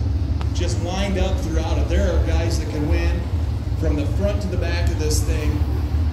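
A man's voice announcing the race field over a speedway public-address system, with a steady low rumble underneath.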